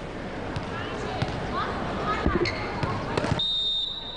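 Indoor volleyball hall: crowd hubbub with a few ball thuds and short sneaker squeaks. Near the end, a single long, steady, high whistle blast, the referee's whistle before the serve.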